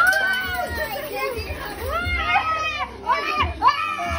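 A group of children shouting and squealing excitedly over one another, high-pitched voices rising and falling, with adult voices mixed in.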